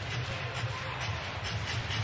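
Ice hockey arena ambience: a steady crowd murmur over a low rumble, with faint clicks from the ice.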